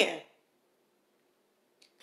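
A woman's voice trailing off at the end of a word, then near silence, with a faint short click just before she starts speaking again near the end.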